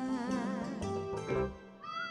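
A young woman singing a Thai song with vibrato into a microphone over band accompaniment; her phrase ends about one and a half seconds in, and a high held melody line comes in near the end.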